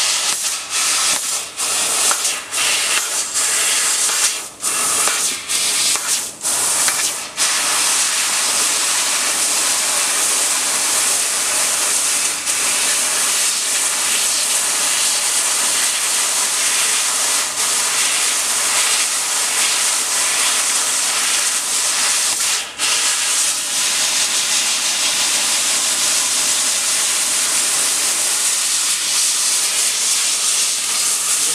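Fiber laser cutting machine cutting 1 mm galvanized steel sheet: a loud steady hiss of assist gas jetting from the cutting head's nozzle. There are several short breaks in the first seven seconds and one more about two-thirds of the way through; otherwise the hiss runs unbroken.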